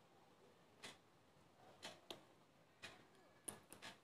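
Near silence with faint ticks evenly spaced about once a second, and a few quicker clicks near the end.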